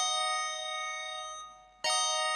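Bell-like electronic chords from web-page background music: one chord rings and fades, and a second is struck near the end and left to ring.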